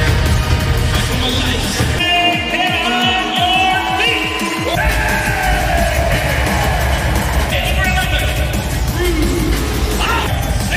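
Loud arena sound-system music with heavy bass, with a cluster of falling electronic sweeps between about two and five seconds in. An announcer's voice over the PA carries over the music, as for basketball player introductions.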